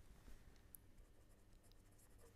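Faint scratching and tapping of a pen writing on paper.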